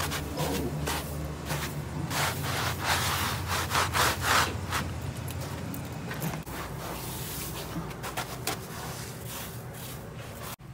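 Shoes crunching step by step through a thin layer of fresh snow on concrete, loudest a few seconds in. This gives way to the softer, gritty scraping of a fingertip tracing letters in the snow, over a low hum in the first half.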